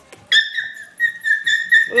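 A Border Collie puppy whining in a quick run of short, high-pitched squeals, about four a second, starting about a third of a second in.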